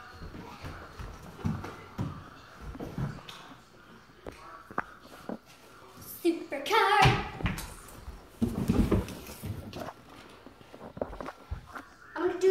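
A child's short wordless exclamation about six seconds in, among scattered knocks and shuffling on a wooden floor.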